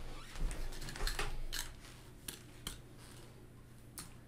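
A few light clicks and soft rustles, spread a half-second or so apart, from a person moving about and handling small objects, over faint room noise.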